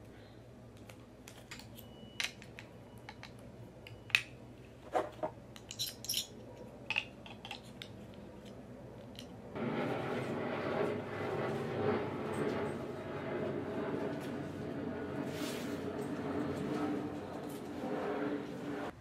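Small clicks and light rattles from handling a watch charger and its cable, scattered over the first half. About ten seconds in, a steady, louder noise takes over.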